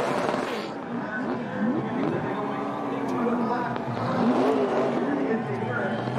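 NASCAR Cup stock car's V8 engine revving up and down over and over during a burnout, the rear tires spinning and smoking on the track.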